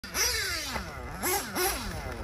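HB D817 1/8-scale nitro buggy's Picco P3 TT two-stroke engine revving up and down under throttle as it drives, the pitch falling away slowly and snapping back up about three times.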